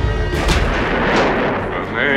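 Trailer sound design over the score: a heavy hit about half a second in, followed by a dense rushing swell that rises and then fades.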